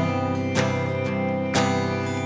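Live band music between sung lines: acoustic guitar chords strummed about once a second, ringing on over a sustained band backing.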